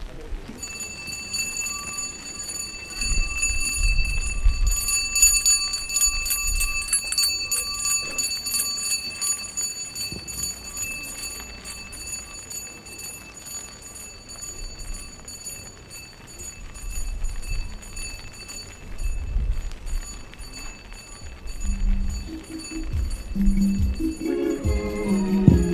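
Church choir music: a keyboard holding a long steady chord over jingling hand percussion and soft low drum beats, with voices coming in to sing near the end.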